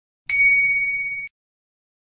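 A single clear, bell-like ding, struck once, that rings for about a second and then cuts off abruptly.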